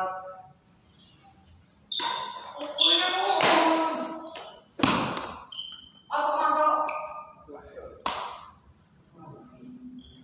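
Badminton rally in a reverberant hall: two sharp racket strikes on the shuttlecock, one about five seconds in and one about eight seconds in, among short shouted voices of the players.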